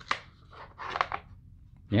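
Two polymer rifle magazines, the BlackbeardX magazine-shaped unit and a Magpul 30-round magazine, handled in the hands and shifted against each other: a few short plastic scrapes and clicks at the start and about a second in.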